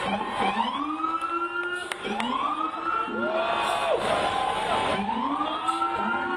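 Siren wailing in repeated cycles, each dropping and then rising about every two seconds, with a second siren overlapping near the middle.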